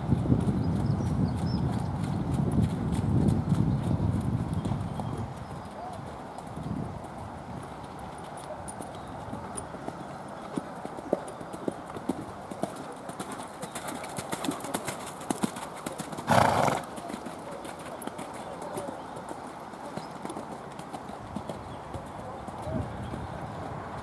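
Hoofbeats of a ridden pony trotting on a wet, muddy sand arena, a scatter of soft thuds and clicks, louder in the first few seconds. About two-thirds of the way through, one short loud burst stands out.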